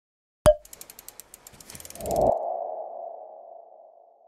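Logo sting sound effect: a sharp click, a run of rapid ticks, then a low hit with a mid-pitched ringing tone that slowly fades away.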